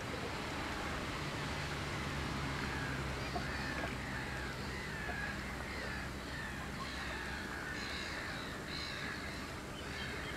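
Birds calling over open water: many short, high calls repeat throughout, thickest in the last few seconds. A steady low rumble sits underneath.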